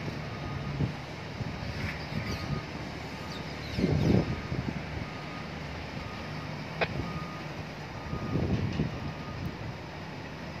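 Heavy port forklift reversing with a load of steel pipes on its forks: its back-up alarm gives short, even beeps about once every 0.8 s over the engine's low running sound. The engine grows louder twice, about four seconds in and again near the end, and a single sharp metallic click comes about seven seconds in.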